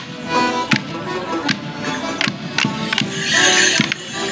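Border morris dance music from a live band with a steady beat, cut through by sharp wooden knocks about every three-quarters of a second as the dancers clash their sticks. A brief noisy burst sounds shortly before the end.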